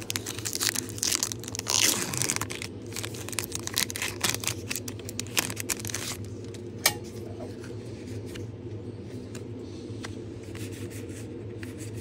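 Foil wrapper of a Pokémon trading card booster pack being torn open and crinkled by hand, a dense crackling rustle. About six seconds in it dies down to faint rustling, with one sharp click shortly after.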